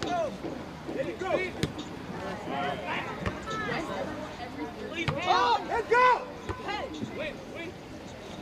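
Shouts and calls from players and the sideline across an outdoor soccer field, loudest about five to six seconds in, with two sharp knocks about a second and a half in and about five seconds in.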